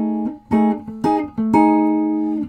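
Semi-hollow-body electric guitar strumming a three-note B13 voicing on the D, G and B strings, about five strums in a syncopated rhythm, the last one held ringing longest.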